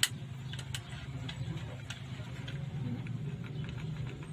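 Light metal clicks and taps from a door lock's latch parts being handled and worked with pliers, sharpest at the very start and then a few fainter ones over the next two seconds, over a steady low hum.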